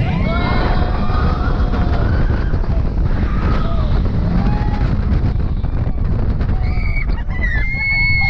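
Wind rushing over an action camera's microphone on a moving roller coaster, with riders screaming and whooping over it in short yells, and one long high scream near the end.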